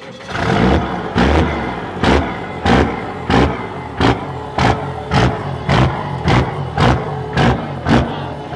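A second-gen Cummins 5.9 inline-six turbo diesel with compound turbos and a bed-mounted stack, starting cold and running, with a regular pulse a little under twice a second.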